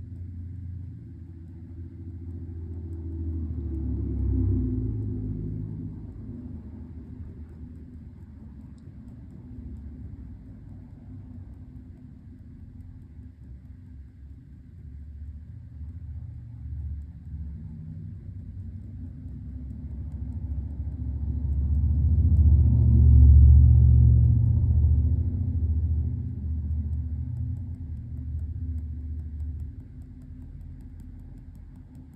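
A low, steady rumble like a passing vehicle. It swells twice, briefly about 4 seconds in and more strongly about two-thirds of the way through, then eases off.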